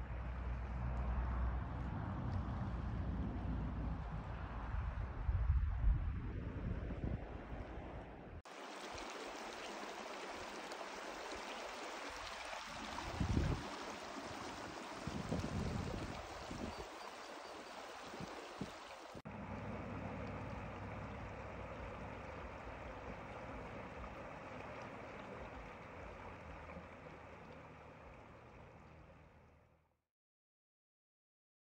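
Shallow mountain stream, the Tuolumne River, running steadily over rocks and gravel. The water sound changes abruptly twice and fades out at the end, with a couple of brief low thumps in between.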